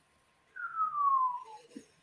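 A single whistled note that glides down in pitch over about a second.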